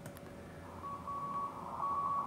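Morse code (CW) signal on the 40-meter amateur band, received through an RTL-SDR with a DIY upconverter and demodulated by SDR#: a keyed tone of dots and dashes near 1 kHz begins nearly a second in, over steady receiver hiss.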